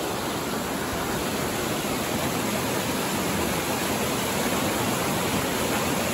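Whitewater of Meadow Run rushing steadily down a rock chute at the Ohiopyle Slides, running high enough to cover the pothole.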